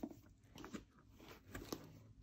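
Faint, scattered clicks and rustles from a disc-bound paper planner and its plastic cover being handled.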